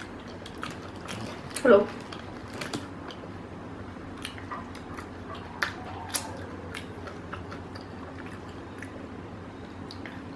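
A person chewing crunchy-coated fried chicken with the mouth closed and licking their fingers: scattered wet mouth clicks and smacks.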